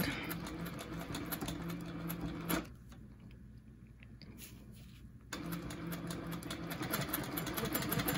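Longarm quilting machine stitching, its needle going in a rapid even rhythm over a steady hum. It stops about a third of the way in and starts stitching again a couple of seconds later.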